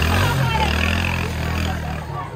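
A motor vehicle engine running steadily, a low even hum that fades near the end, under the chatter of a crowd.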